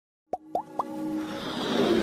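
Electronic logo-animation sound effects: three quick pops, each sliding up in pitch, about a quarter second apart, then a rising whoosh that swells toward the end.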